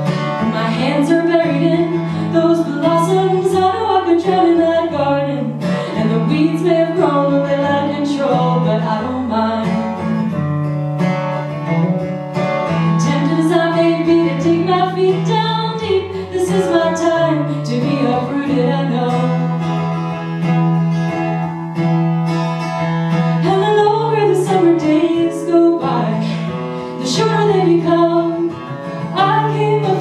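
A woman singing a slow folk song while accompanying herself on a strummed acoustic guitar.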